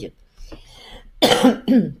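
A woman coughs once, sharply, a little over a second in, after a short near-quiet pause; her throat needs a drink of water.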